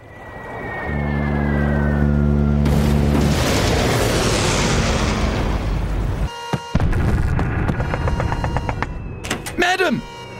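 Sound effects from a music video's ship-attack opening. A deep, steady ship's horn blast lasts about two seconds over a swelling wash of noise, and after a brief drop-out a dense mix of clattering and warbling effects follows.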